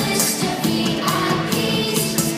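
A group of children singing a Christian worship song together over a recorded backing track with a steady beat.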